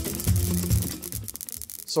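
Background music with a steady beat that fades out about halfway through.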